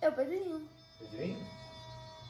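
Brief indistinct speech, in two short bursts within the first second and a half, over a faint steady hum.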